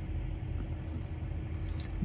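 Steady low engine rumble with a constant hum, heard from inside a parked semi-truck's cab: the truck idling.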